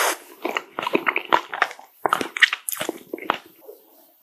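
Close-miked chewing of a bitten-off piece of green-tea ice cream bar with a crisp coating: crackly crunches and wet mouth sounds, thinning out near the end.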